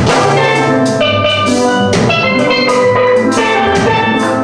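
A steel pan ensemble playing, many chrome pans ringing out bright struck notes together over a drum kit with cymbal hits keeping the beat.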